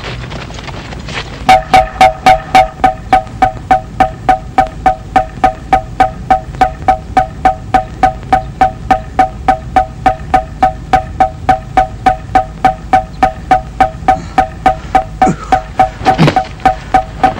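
A wooden kentongan (slit drum) beaten in a fast, even run of pitched wooden knocks, about three and a half a second, starting about a second and a half in. This rapid beating is the Javanese village alarm.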